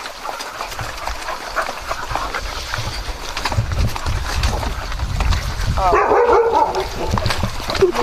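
Dogs barking and yipping in a short burst about six seconds in, over a steady low rumble.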